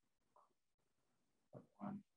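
Near silence: room tone, with a single short spoken word near the end.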